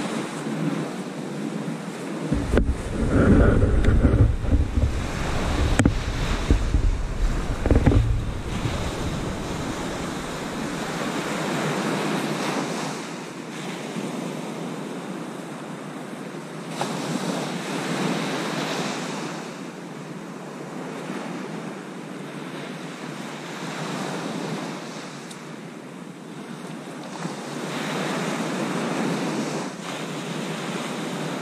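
Small waves breaking on a sand beach, the surf swelling and falling back every few seconds. For the first several seconds wind buffets the microphone with a low rumble, and there are two light knocks near the start.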